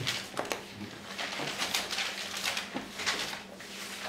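Bible pages being leafed through: a run of short, irregular paper rustles and flicks.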